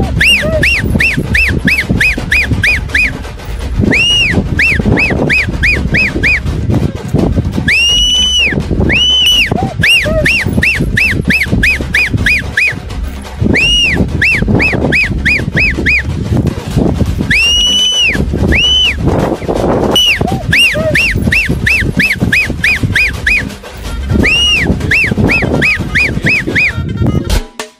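A two-finger whistle calling a Chippiparai dog. Each call is a long rising-and-falling note followed by a quick run of short chirps, and the call repeats several times over background music with a steady beat.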